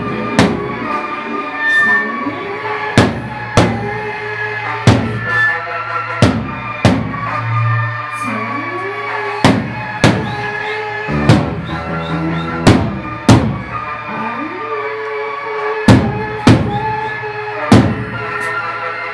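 Loud live band music: sustained pitched tones, some sliding up or down in pitch, under heavy drum hits that come in an uneven, often paired pattern.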